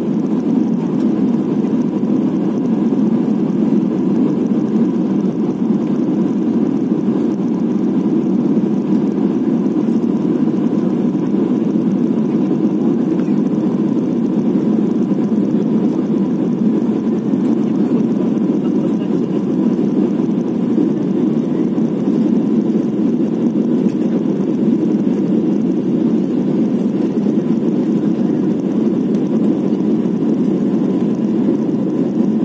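Steady cabin roar of an Airbus A320-family jet airliner in flight, heard from a window seat: engine and airflow noise, with a faint steady whine above it.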